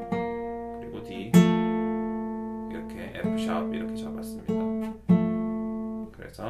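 Bedell acoustic guitar, capoed, fingerpicked in the key of G: single notes and chords plucked about once a second and left to ring out.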